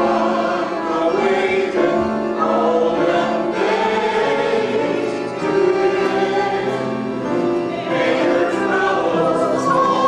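A choir singing in harmony, many voices holding long notes.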